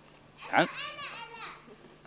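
Children's high-pitched voices calling out "ana" ("me") for about a second, starting about half a second in: children volunteering.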